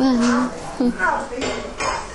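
Crockery and cutlery clinking, a few sharp clinks in the second half, with a voice speaking briefly at the start and again about a second in.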